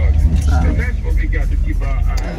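Steady low road rumble inside a moving car's cabin, with a voice over it.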